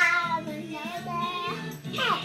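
A young girl singing loudly along to a Korean pop song playing in the background: one long sung phrase that bends up and down and ends about one and a half seconds in, with a new note starting near the end, over the song's steady backing.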